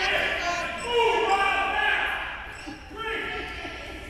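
Indistinct voices shouting and calling out, echoing in a large gymnasium, with a basketball bouncing on the court floor during play. The voices are loudest in the first half and fade somewhat towards the end.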